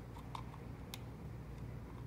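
A few faint plastic clicks as a small cable plug is pushed into the port on the back of a plastic IR motion sensor housing.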